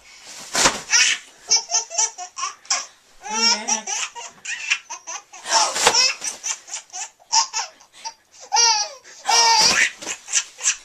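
Baby laughing hard, in many short bursts of high-pitched laughter one after another.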